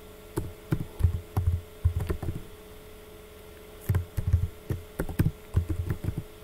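Typing on a computer keyboard: irregular keystrokes, each a sharp tap with a dull thump, in two runs with a pause of about a second and a half between. A faint steady hum lies underneath.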